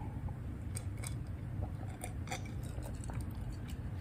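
A person quietly sipping and swallowing lemonade from a glass, with a few faint clicks over a low steady hum.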